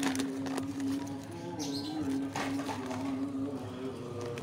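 A plastic bag of potting mix rustles a few times as a hand digs in it, over a steady low hum that steps slightly up and down in pitch.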